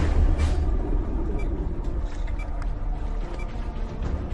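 Low, dense underwater rumble in a swimming pool, with a soft tick about once a second.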